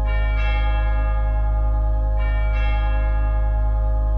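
Closing music of bell tones, struck three times and left ringing over a steady low sustained drone.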